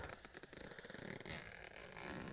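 Faint handling of a tent door zipper and its nylon fabric, the slider being worked on a broken zipper, over near-silent room tone.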